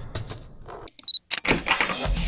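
Edited sound effects in a music track: scattered clicks and a short high beep, a brief near-silent gap, then a rush of noise swelling back into the music.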